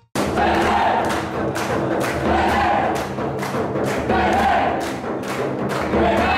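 A hand-beaten frame drum (daf) playing a steady rhythm of about three beats a second, with a group of voices chanting in chorus over it. The sound starts abruptly at the very beginning.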